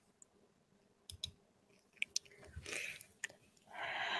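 Faint clicks and soft mouth and breath sounds from a woman overcome with emotion, with a longer breathy sound near the end.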